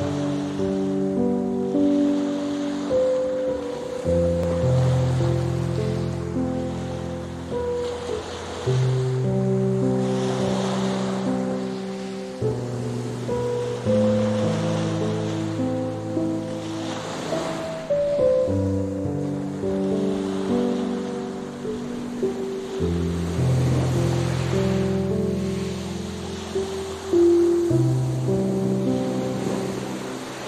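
Slow, soft relaxation music of long held chords, laid over ocean waves washing onto a shore, the surf swelling and fading every several seconds.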